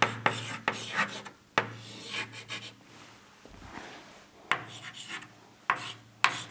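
Chalk writing on a blackboard: a run of quick scratchy strokes, a pause of about a second and a half, then a few more strokes near the end.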